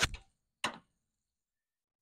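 A single short knock about half a second in, then dead silence.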